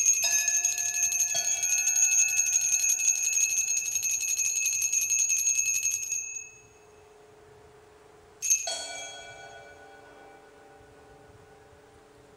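Altar bells rung at the elevation of the chalice: a cluster of small bells shaken in a continuous rapid jingle for about six seconds, then stopping. A single further stroke rings out and fades about two seconds later.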